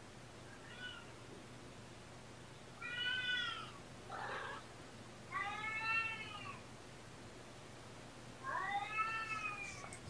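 A kitten meowing: a faint short meow, then three high, clear meows about three seconds apart. The later two are longer than the first.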